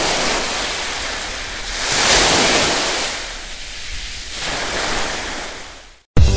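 Sound effect of ocean surf: waves washing in and out in swells, the biggest about two seconds in and another near five seconds, fading out at the end.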